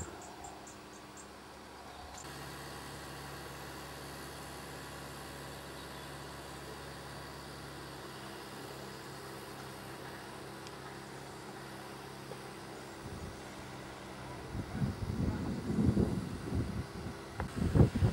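An engine running steadily with a low, even hum from about two seconds in. In the last few seconds, wind buffets the microphone in irregular loud gusts.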